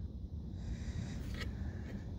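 A quiet pause with a faint steady low rumble of background noise and a brief soft noise about one and a half seconds in.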